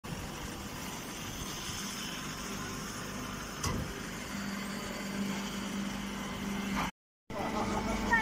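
Straw baling and shredding machinery running with a steady mechanical noise. A single knock comes a little before halfway, and a steady motor hum joins soon after. The sound drops out completely for a moment near the end.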